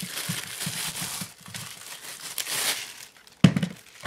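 Clear plastic wrapping crinkling as it is pulled off an electric pencil sharpener, in irregular rustles, with a single thump near the end.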